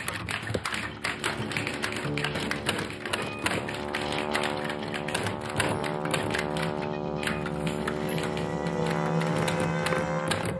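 Manual typewriter keys striking in quick, uneven runs of clicks over background music with sustained notes.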